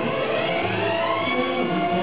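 Song accompaniment playing: held musical notes with one slowly rising sliding tone in the upper range during the first second or so.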